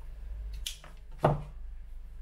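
Flower stems being handled at a wooden worktop: a short crisp sound about two-thirds of a second in, then a single knock, the loudest sound, a little over a second in, over a steady low hum.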